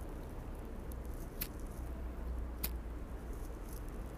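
Faint mouth sounds of a man drawing on a tobacco pipe: soft puffing with two small clicks of the lips on the stem, over a low steady hum.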